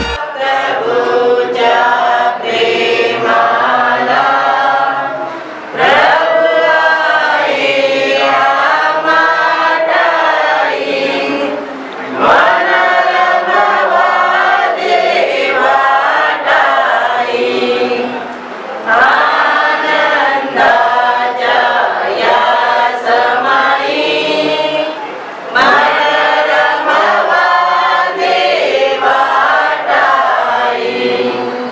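A crowd of men and women singing together, unaccompanied. The song comes in long phrases of about six seconds, each broken by a short pause.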